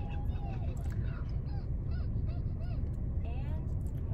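Faint, repeated short honking bird calls, several in a row, over a low steady rumble.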